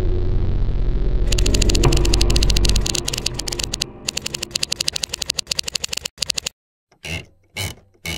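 A low droning rumble fades out about three seconds in. Over it, a fast, dense run of mechanical clicks starts about a second in and stops abruptly after about six seconds. Three short bursts of noise follow near the end.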